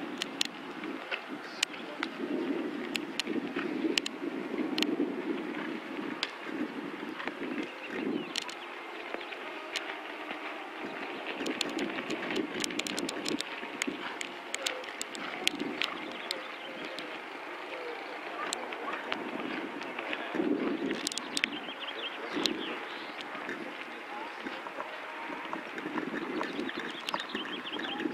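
Outdoor show-jumping arena ambience during a horse's round: a steady murmur of distant voices and some wind on the microphone, broken by scattered sharp clicks.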